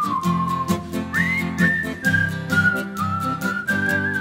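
A person whistling a lilting folk tune, sliding up into several notes, over a steady rhythmic chord accompaniment.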